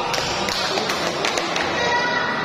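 Table tennis ball knocked back and forth in a doubles rally: several sharp taps of ball on bats and table, a few tenths of a second apart.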